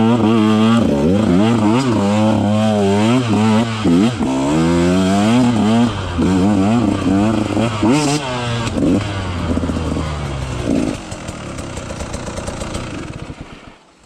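KTM 150 XC-W two-stroke single-cylinder dirt-bike engine revving up and down on and off the throttle, its pitch rising and falling again and again. Over the last few seconds it drops to a lower, quieter run as the bike slows.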